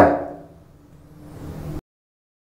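The end of a spoken word, then faint low room hum that swells slightly before cutting off abruptly into dead silence near the end, as at an edit.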